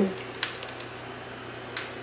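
A ring light's power switch being clicked: a small sharp click about half a second in and a louder one near the end as the light comes on, over a low steady hum.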